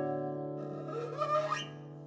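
Nylon-string classical guitar with held notes ringing and fading, and a rising squeak of a left-hand finger sliding along the strings about a second in.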